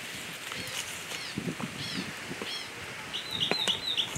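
Birds calling: a few scattered chirps, then from about three seconds in a quick run of short, repeated high notes.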